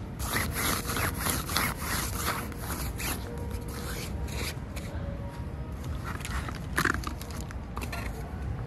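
Gloved fingers scratching and rubbing the polyester fabric of tent carry bags, in quick repeated strokes for the first few seconds, then sparser, with one sharper scrape near seven seconds. Faint background music plays underneath.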